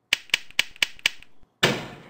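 Five sharp clicks about a quarter second apart, then a louder noisy burst that fades. These are the sound effects of a neural-circuit animation: one click as each of five light-sensing neurons is activated in turn by a moving light, then the output motion-sensing neuron firing.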